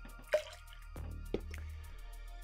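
Background music with a steady beat, over which a measure of liqueur is tipped from a steel jigger into a steel cocktail shaker tin, giving two short drip-like taps, about a third of a second in and again about a second later.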